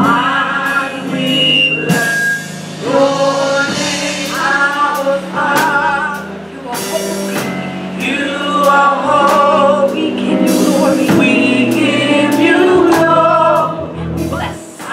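Gospel praise song: a praise team singing together through microphones over instrumental backing with steady low sustained notes and regular sharp beats.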